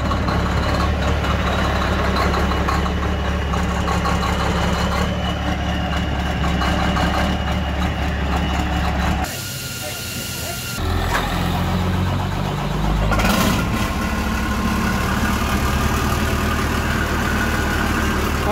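Race truck's diesel engine cold-starting a little past halfway through: it cranks and catches, then settles into a steady, evenly pulsing idle. Before the start, another diesel engine runs steadily.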